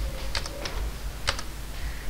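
A few scattered computer keyboard keystrokes: a quick pair, another just after, and a single one past the middle.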